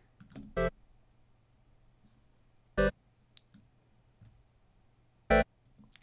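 Three short, bright synthesizer blips from the SoundSpot Union soft synth's wavetable oscillator, loaded with a spectral wavetable from Serum and not yet shaped by any envelope, each note about a tenth of a second long and a little over two seconds apart, with a faint low hum between them.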